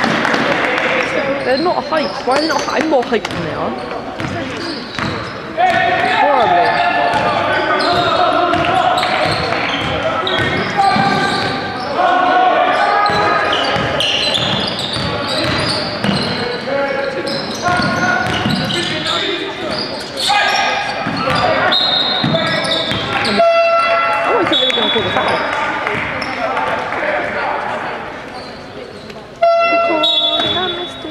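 Basketball game in a large sports hall: the ball bouncing on the wooden court amid players' voices, echoing. A steady electronic buzzer from the scoring table sounds briefly twice, once a little before the end and again right at the end.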